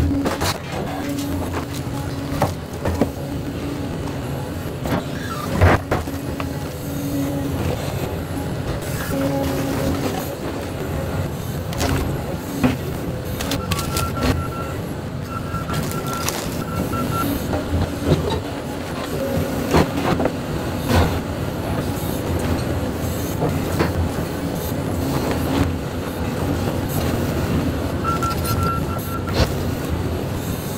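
Volvo crawler excavator's diesel engine running steadily under hydraulic load. Scattered sharp knocks and cracks come as its bucket breaks up and drags a rebar-reinforced concrete slab and debris. A brief high whine sounds twice.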